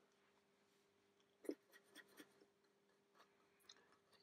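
Near silence with a faint steady hum, broken by a few soft taps and scratches about a second and a half in and around two seconds in: a small paintbrush being worked on a tissue and against the plastic side of a model wagon.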